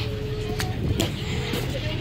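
Low, steady rumble on a car ferry's open deck, wind on the microphone over the ship's running drone, with a faint steady hum and a couple of light clicks.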